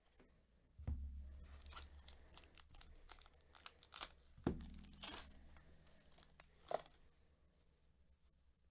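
A plastic-foil trading-card pack being torn open and its wrapper crinkled by hand, with crackling and a snap near the end as the cards are pulled out. Two dull thumps come about a second in and midway through.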